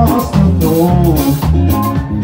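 Live band playing with electric guitar, drum kit and keyboard over a heavy bass line, with a steady beat and notes sliding in pitch.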